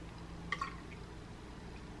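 Faint pour of liquid coffee creamer from a plastic bottle into a cup, with one small click about half a second in.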